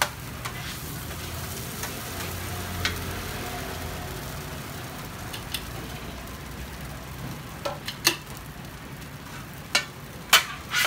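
Oyster omelette frying on a flat griddle, a steady sizzle, with a few sharp clicks and scrapes of metal utensils against the griddle, the loudest about eight seconds in.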